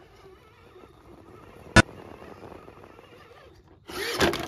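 Element RC Enduro Ecto 1/10 rock crawler's electric motor and gears whining faintly and unevenly as it climbs over rocks, with one sharp knock about two seconds in.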